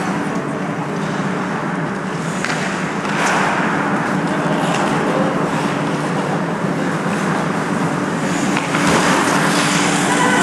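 Ice hockey skates scraping and carving on the ice, with a few sharp clacks of sticks and puck, over a steady low hum.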